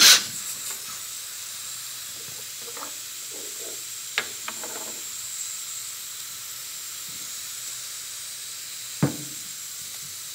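Compressed air hissing steadily at a pneumatic rack-and-pinion actuator, with a faint high whistle in the hiss, after a loud snap as the air line is connected at the start. A few light metallic knocks from a wrench on the actuator's stop bolt come about four seconds in and again near the end.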